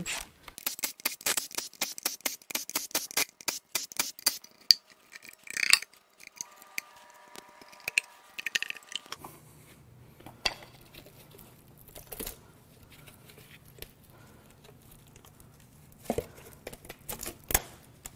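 Tool and metal noises as the timing cover bolts of a Cadillac Northstar V8 are taken out and the cover is pulled off. First comes a few seconds of rapid clicking, then a brief steady whine of a small motor a little after the middle. Scattered clinks and a few scrapes follow near the end as the cover comes free.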